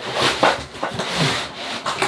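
Cardboard packaging rubbing and scraping as an inner box is slid out and its flap pulled open by hand, in several uneven swells.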